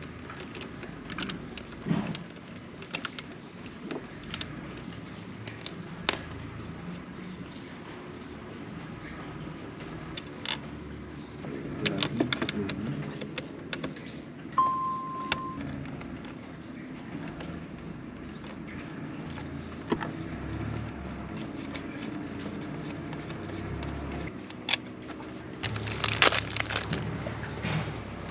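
Hand socket ratchet clicking and small metal screws and tools clinking as bolts are undone, in scattered bursts of small clicks with busier clatter at about twelve seconds and near the end. A short steady beep sounds about halfway.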